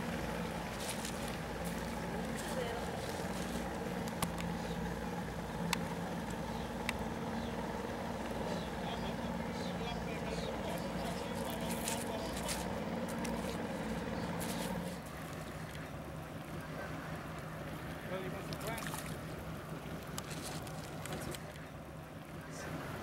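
A motorboat engine running steadily on the water, a low even hum that cuts off abruptly about two-thirds of the way through. A few sharp clicks in the first third.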